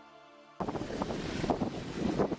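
Faint music ends about half a second in, cut off by the sound of a dog sled moving on a snowy trail: wind on the microphone over a steady hissing rush, with irregular knocks and rattles.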